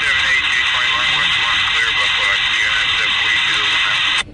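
Railroad scanner radio transmission: a loud, static-heavy burst with a faint, hard-to-make-out voice underneath, cutting off suddenly right at the end.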